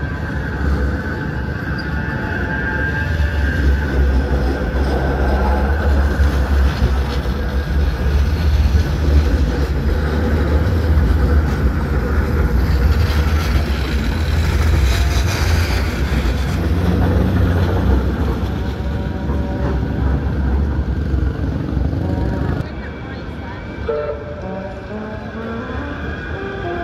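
Manchester Metrolink Bombardier M5000 tram running past close by on street track: a low rumble that builds, is loudest through the middle as the tram passes, then gives way abruptly to quieter street sound near the end.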